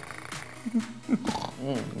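A person's voice making a playful cat-like growl, mixed with speech (a drawn-out "no").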